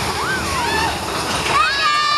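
Water splashing and rushing from a waterfall effect beside a roller coaster track, with riders' high voices calling out. About one and a half seconds in, the voices break into long, high, held screams.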